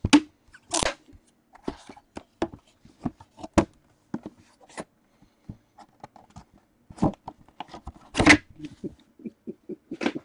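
Sealed cardboard trading-card boxes handled on a table: scattered taps and knocks as they are picked up and set down, with a few longer rustling, scraping bursts, the loudest shortly after the start and about eight seconds in.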